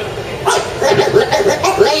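People talking and laughing. Near the end a man starts an announcement in a long, drawn-out, rising voice.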